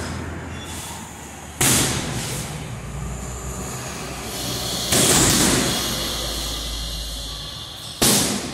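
Gloved punches landing on a hanging heavy bag: two hard hits, about a third of the way in and just past the middle, each trailing off over a second or two, with another hit at the very end.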